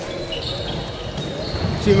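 Handballs bouncing on the wooden floor of an indoor sports hall during training, over the hall's echoing background noise.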